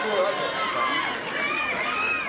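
Voices calling and shouting on a football pitch during an attack on goal, with one long rising-and-falling shout near the end.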